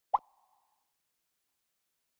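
A single short pop sound effect, edited in with an animated number transition, about a tenth of a second in, with a brief fading tail.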